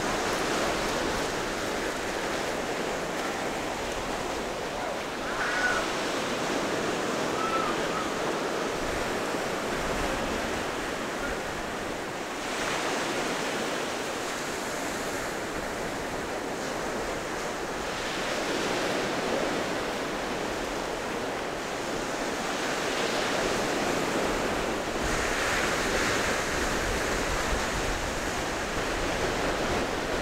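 Sea surf breaking and washing up the beach: a steady rushing hiss that swells and eases every few seconds as the waves come in.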